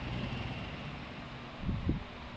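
A steady low rumble of background noise, with two soft low thumps near the end.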